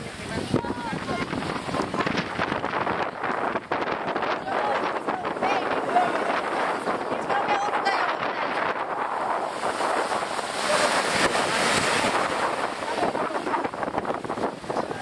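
Wind buffeting the microphone over the wash of breaking surf, with scattered voices now and then.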